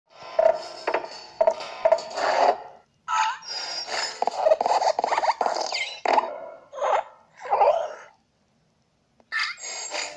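Sound effects of an animated logo intro: a run of short, separate bursts, some with sliding pitch, broken by gaps near the middle and again just before the end.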